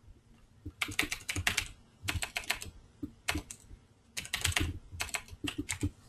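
Typing on a computer keyboard: several quick bursts of keystrokes with short pauses between them.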